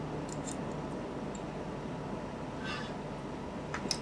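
Quiet room tone with a faint steady hum, broken by a few faint light clicks near the start and near the end and a soft brief rustle about three seconds in.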